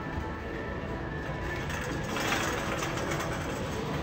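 A wire shopping cart being shoved along a hard store floor, its wheels rolling and rattling, loudest about two seconds in, over faint background music.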